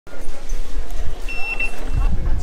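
A ticket-gate Oyster card reader beeps once as the card is tapped, a short, high, steady tone about halfway through. Under it run the low rumble and voices of a crowded station.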